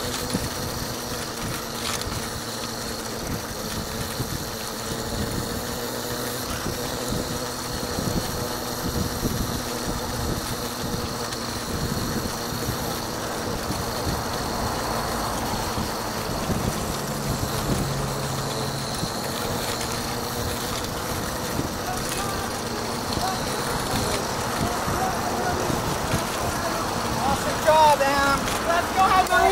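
Steady outdoor hum of road traffic and engines, with indistinct voices in the background; voices become clearer right at the end.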